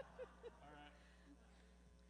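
Near silence: room tone with a steady low hum. A few last bursts of laughter and some faint words fade out in the first second.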